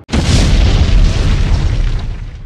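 Explosion sound effect: a sudden loud boom with a deep rumble that bursts in at once and begins to die away near the end.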